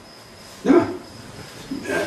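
A single brief vocal sound, a short bark-like call, comes about two-thirds of a second in and is soon over.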